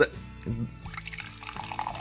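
Carbonated cider being poured from a large can into a glass, with a faint splashing and fizzing that grows through the second half.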